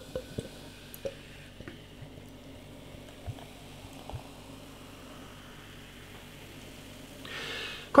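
Highly carbonated beer poured gently from a glass bottle down the side of a tilted glass: a quiet trickle, with a few small glass clicks in the first second or so. A soft fizzing hiss rises near the end as the foam head builds.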